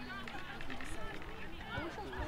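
Indistinct voices of several people talking and calling out at a distance, overlapping, with no words clear.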